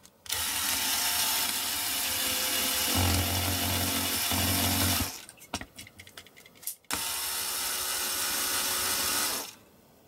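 Power drill with a twist bit drilling out the rivet on a diecast metal toy car's baseplate, in two runs of about five and two and a half seconds. The first run gets heavier and lower for its last two seconds as the bit bites into the metal. Small clicks and knocks of handling fall between the runs.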